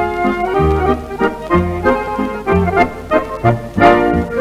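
Accordion playing a mazurka melody over guitar and bass accompaniment, in a steady three-beat dance rhythm with a bass note about once a second.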